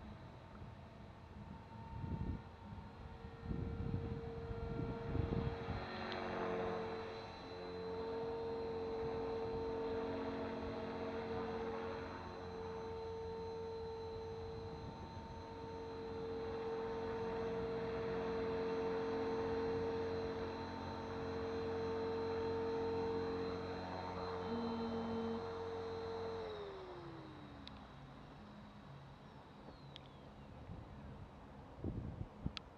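Blade 450 X electric RC helicopter in flight, its motor and rotor giving a steady whine that holds one pitch for most of the time. Near the end the whine slides down in pitch and fades as the motor spools down.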